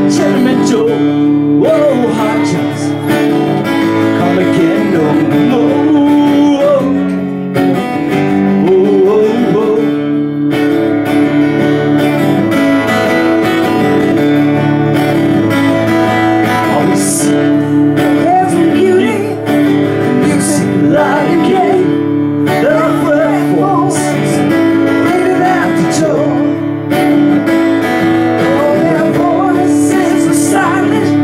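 Live acoustic guitar strumming chords with a voice singing the melody over it.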